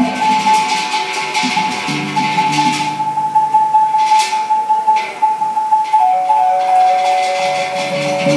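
Live traditional Bornean ensemble music. One high note is held for about six seconds, then drops to a lower pair of notes, over low gong tones that enter about two seconds in, fade, and return near the end, with short bursts of rattling.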